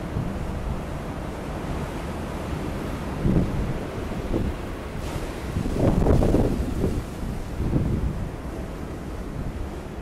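Waves breaking on a pebble storm beach over a steady low rumble of wind on the microphone. The loudest surge comes about six seconds in, with smaller ones around three and eight seconds.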